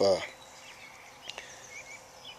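A spoken word ends right at the start, then quiet outdoor background with a few faint high chirps and a single soft click about a second in.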